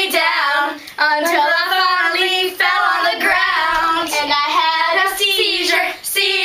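Young girls singing a song, long held notes that waver in pitch, with short breaks between phrases.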